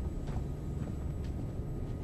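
Steady low rumble of an aircraft cabin in flight, with a few faint ticks over it.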